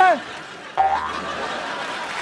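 A short comedy sound-effect sting starts suddenly about three-quarters of a second in, right after a spoken punchline. It is a brief steady tone over a low hum that fades within about half a second.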